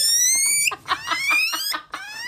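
Guinea pig wheeking: long, high-pitched squeals, each rising in pitch. One ends just before a second is in, a second runs from about a second in, and another begins at the very end.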